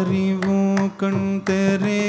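Carnatic classical music: a singer holds one long, steady note, breaking briefly about a second in, over light drum strokes.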